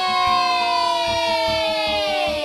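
A long, siren-like wailing tone sliding slowly down in pitch, part of a cartoon soundtrack, with a soft steady beat underneath.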